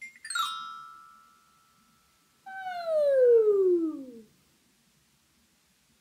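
A quick run of mallet strikes on a small xylophone, the last notes ringing out and fading over a second or so. About two and a half seconds in, a voice slides steadily down in pitch for about a second and a half, louder than the bars: a vocal pitch glide echoing the pattern.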